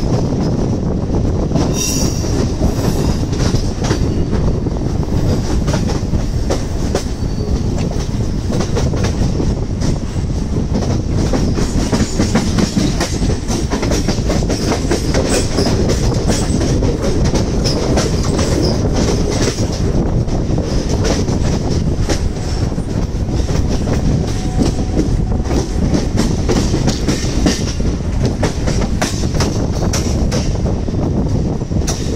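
Mumbai suburban electric local train running along the track, heard from its open doorway: a steady rumble of wheels on rail with frequent rapid clicks over the rail joints and a thin high wheel squeal that comes and goes.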